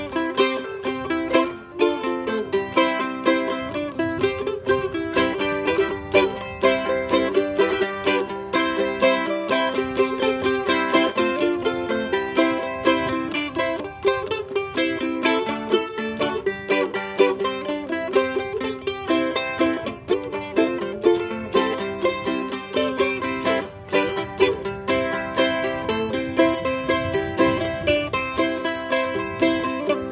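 Solo acoustic ukulele playing an instrumental tune: an unbroken run of plucked notes and chords.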